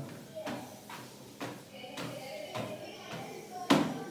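A child's footsteps on a motorised treadmill belt set to its lowest speed: a few light, irregular thumps as he starts walking.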